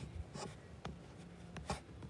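A few light clicks and taps at irregular intervals, over a quiet room background.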